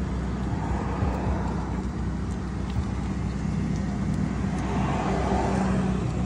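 Car engine idling, a steady low hum heard from inside the vehicle.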